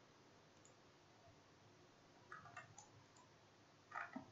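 Near silence with a few faint computer mouse clicks in a quick cluster about two and a half seconds in, and another click at the very end.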